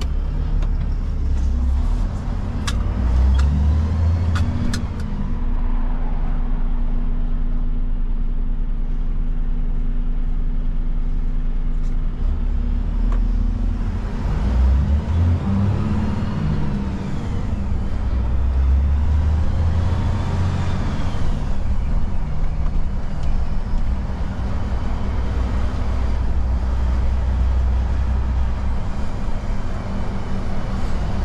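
Refuse truck engine running while driving, heard from inside the cab. The engine note rises and falls as it pulls away and slows, and there are a few sharp clicks about two to five seconds in.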